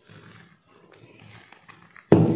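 Faint rustling and scraping of dry flour as it is tipped from a glass bowl into a white bowl and stirred by hand, with a few soft taps near the end.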